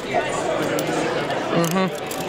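Crowd chatter in a busy convention hall, with one voice standing out briefly near the end.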